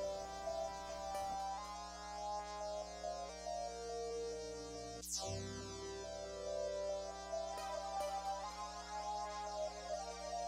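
Roland MV-1 Verselab playing back a simple beat sequence made from its factory synth sounds. Sustained synth chords shift every couple of seconds, with a bright falling sweep about five seconds in.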